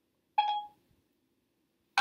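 A single short electronic beep from a smartphone as Siri takes a command to set a five-minute timer.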